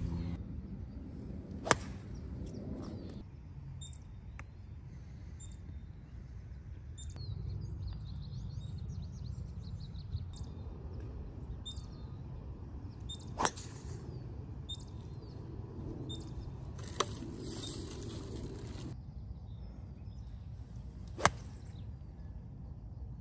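Golf club heads striking balls off the tee: three loud, sharp cracks, about 2 s in, about 13 s in and near the end, with a fainter click in between. Birds chirp in the background over a steady low rumble.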